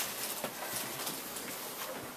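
Quiet room noise of a seated audience waiting: faint rustling and shifting, with a few small clicks and knocks.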